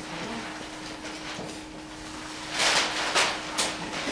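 Quiet classroom room tone with a steady low hum, broken a little before three seconds in by a brief scuffing noise and then two short clicks, the small handling sounds of students at their desks.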